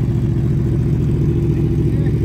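Sport motorcycle engine idling steadily.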